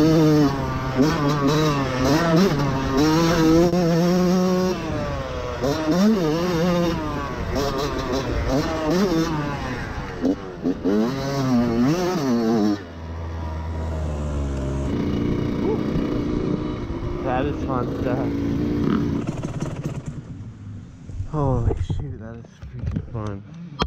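Yamaha YZ125 two-stroke dirt bike engine revving hard and backing off again and again as it is ridden around a motocross track, its pitch climbing and dropping. About thirteen seconds in it falls to a low steady note for a couple of seconds. It quietens near the end as the bike slows.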